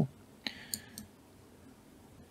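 A computer mouse clicking faintly a few times in the first second.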